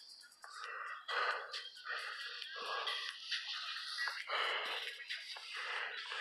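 Music in the background, with irregular bursts of noise a few times a second.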